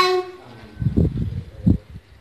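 A child's voice ends a long, high held note about a quarter second in. A couple of short, low vocal sounds follow about a second in and again near the end.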